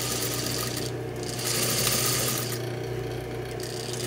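Industrial sewing machine running: a steady motor hum under a rapid stitching clatter. The clatter eases off twice, briefly about a second in and again for about a second near the end, while the hum carries on.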